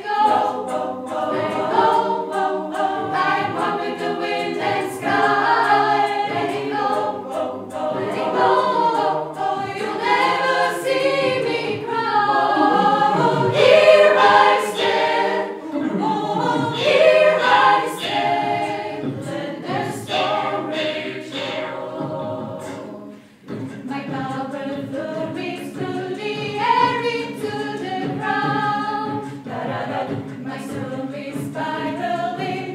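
Mixed chamber choir of women's and men's voices singing a cappella in several parts, with a brief break about three-quarters of the way through before the singing resumes.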